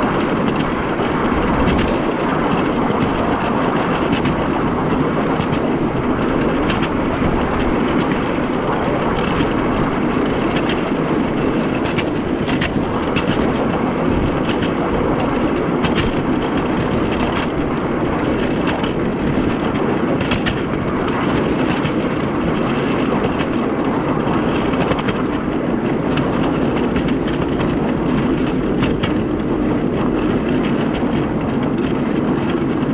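Solar-powered miniature railway train running along its narrow-gauge track: a steady wheel-on-rail rumble with scattered clicks from the rail joints.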